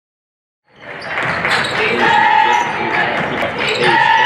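Basketball game sound fading in about a second in: a ball bouncing on a hardwood court with repeated sharp knocks, short squeals and voices over it.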